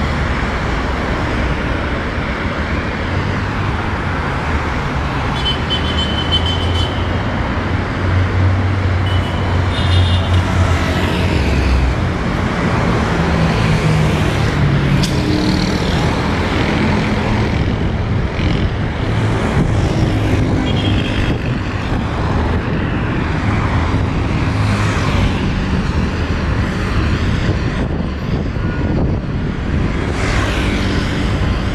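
Steady road traffic on a multi-lane city avenue, with cars, a truck and motorcycles passing. A low engine hum stands out for a few seconds about a third of the way in.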